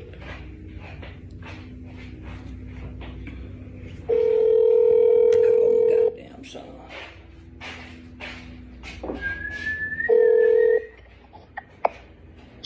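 Mobile phone ringback tone on an outgoing call, heard from the phone's speaker: one steady two-second ring about four seconds in, and a second ring about four seconds later that is cut off after under a second.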